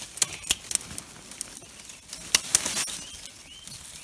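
Footsteps crunching through dry fallen leaves and snapping small twigs on the forest floor, an irregular run of sharp crackles and rustles.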